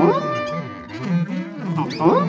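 Saxophone ensemble playing a free improvisation: low saxophones swoop up and down in wavering bent pitches beneath a few held higher notes, with quick upward glides near the end.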